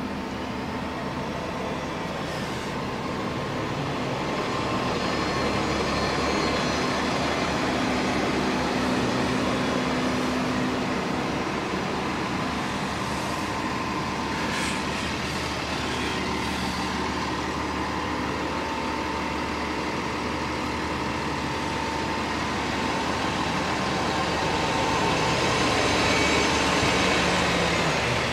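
County Connection transit bus 914 pulling away from a stop, its engine running with a steady drone and a faint whine, getting louder near the end as buses pass close.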